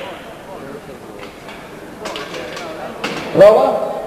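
Background murmur of voices in a large hall with a few faint knocks, then a single loud shout about three and a half seconds in.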